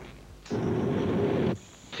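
A low rumble about a second long that starts and stops abruptly, followed by a thin, steady high-pitched whine.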